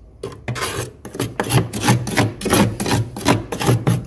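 Metal spoon scraping through flaky frost built up in a freezer, in quick rasping strokes about four a second. They begin shortly after the start and stop near the end.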